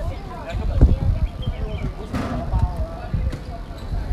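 Distant, indistinct voices of people chatting courtside, with irregular low thumps and a brief noisy burst about two seconds in.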